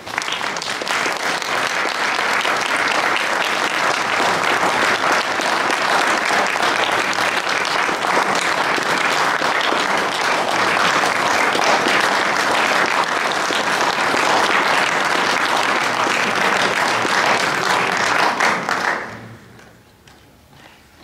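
Audience applause, steady and full, dying away about a second before the end.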